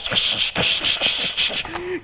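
Crackling, hissing radio static from a walkie-talkie call that gets no answer, with rapid clicks running through it.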